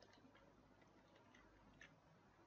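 Near silence, with a few faint clicks from a computer keyboard or mouse being used, the clearest near the end.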